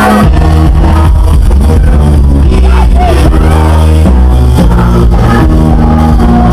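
Loud live band music with a heavy, steady bass line and a driving beat.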